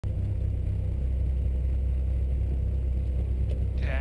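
Volkswagen GTI rally car's engine idling at the stage start, a steady low rumble heard from inside the cabin. A voice begins just before the end.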